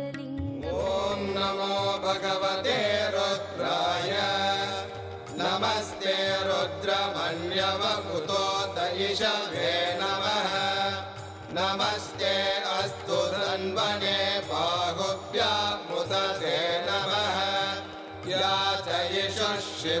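Sanskrit devotional chanting to Shiva, sung in long gliding phrases over instrumental accompaniment with a steady low pulse.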